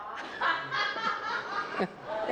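A woman laughing softly, a short run of chuckles.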